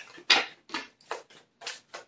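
Tarot cards being shuffled by hand: a quick run of short, papery swishes, about seven in two seconds.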